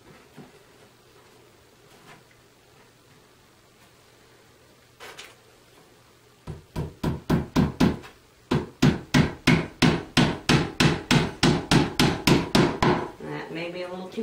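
A hammer driving a tiny nail through the thin fibreboard backing into the edge of a bookcase side panel: a fast run of about twenty sharp taps, around four a second, starting about six seconds in, with a short pause partway through.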